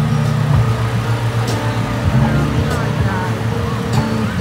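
Low, steady rumble of a parade float's vehicle passing close by, with voices over it.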